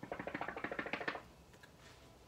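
A rapid rattle of many small clicks for just over a second, then it stops, from hands working the cash binder's clear pouch and plastic banknotes.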